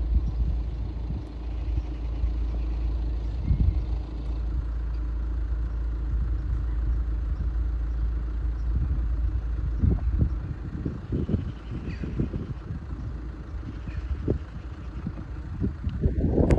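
Steady low rumble with irregular gusty buffeting that grows heavier from about ten seconds in, the kind that wind makes on a phone microphone outdoors.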